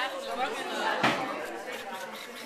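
Background chatter of several people talking in a busy room, with one short knock about a second in.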